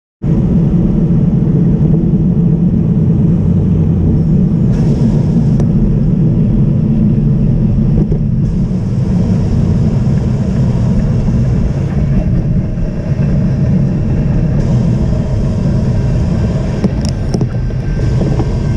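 Steady low wind rumble on a bicycle-mounted action camera's microphone while riding along a wet street, with tyre and road noise under it.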